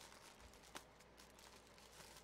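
Near silence: faint room hiss, with one faint click about three-quarters of a second in.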